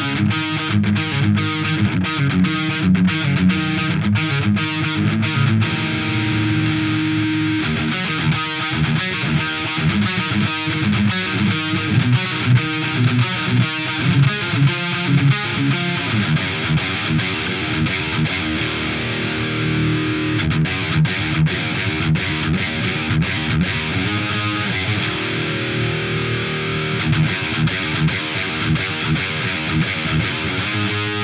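Heavy distorted electric guitar riffs through a Ceriatone tube amp head and a Mesa Boogie oversized cabinet with Vintage 30 speakers. The riffs are played first with the Fulltone OCD overdrive pedal off, then partway through with it switched on.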